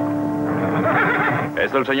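A held music chord fades out while a horse whinnies, with hooves clopping; the whinny is loudest in the last half-second.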